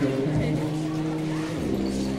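Band music in long held low notes that change pitch twice, over crowd chatter.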